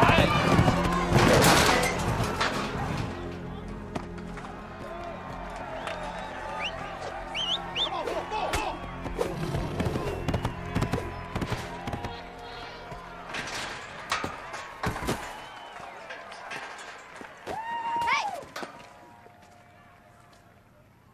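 Mixed film soundtrack: a music score with voices shouting over it, a few sharp thumps, and a long held voice-like call near the end, the whole fading down in the last seconds.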